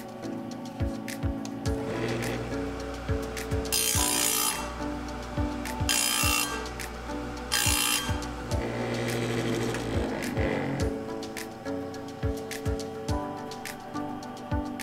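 Electric chainsaw sharpener's motor running, with three short bursts of grinding as the spinning wheel is pushed down onto a chain tooth, under background music.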